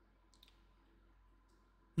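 Quiet room tone with two faint, short clicks, the first about half a second in and a weaker one about a second and a half in.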